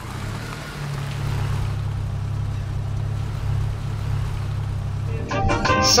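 Car engine running with a steady low drone. About five seconds in, a voice and music take over.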